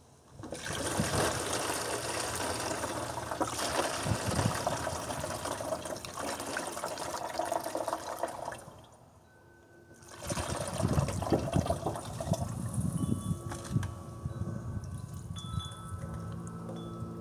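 Fermented fruit juice poured from a plastic bucket through a plastic funnel into a plastic gallon jug, splashing and gurgling. The pour stops briefly about nine seconds in, then starts again. A few steady ringing tones sound near the end.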